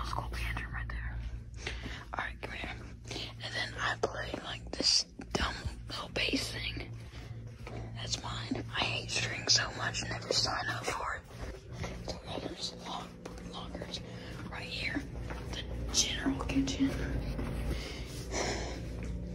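People whispering on and off, over a steady low hum.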